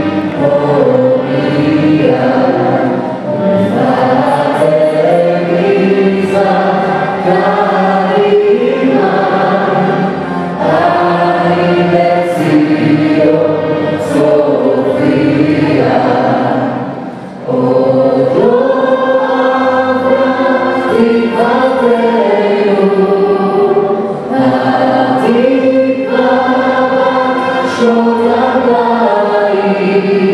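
A small mixed vocal group of men and women singing a national anthem in harmony into microphones over a PA, with a brief pause a little past the middle.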